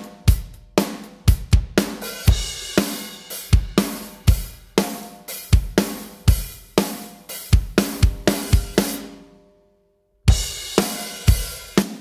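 Playback of a recorded acoustic drum kit playing a steady beat, with kick, snare, hi-hat and cymbals, through parallel-compressed overheads. The volume automation that held down the loud open hi-hat sections is switched off. The beat stops for about a second near the end, then starts again.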